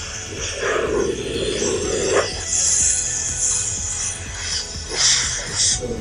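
Handheld steam gun hissing in several bursts as it blows steam over a motorcycle helmet, with background music throughout.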